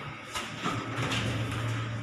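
Footsteps stepping out of an elevator car onto a tiled lobby floor, a few irregular knocks, with a steady low hum starting about a second in.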